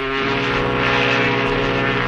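A loud, steady droning tone built of several held pitches with a hiss over it, lasting about two and a half seconds and then cutting off.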